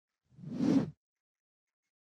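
A short cartoon sound effect: a whoosh about half a second long that swells and stops abruptly.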